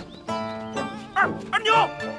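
Background drama music with steady held notes, and a voice calling out twice in short, rising-and-falling shouts in the second half.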